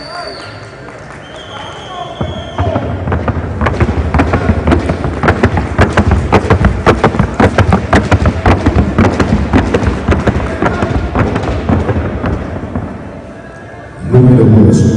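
A horse's hooves striking a wooden sounding board (the tabla) in a rapid, even run of hoofbeats as it is ridden at a gait down the board. The beat starts about two and a half seconds in and fades near the end.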